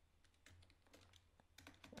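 Faint computer keyboard typing: a few scattered keystrokes, coming more closely together near the end.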